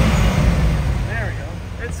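A 2000 Corvette C5's 5.7-litre LS1 V8 being blipped. A rev peaks at the start and then drops back toward idle within about a second.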